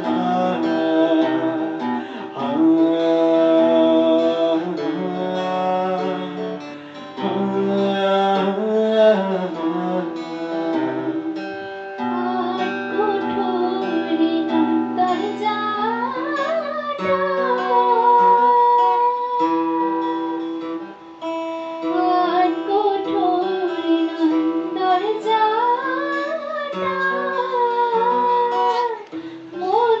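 Acoustic guitar strumming chords under singing; from about twelve seconds in a woman's voice carries the melody with sliding, rising and falling notes.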